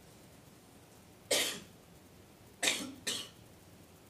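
A man coughing three times: one cough, then a quick double cough about a second and a half later.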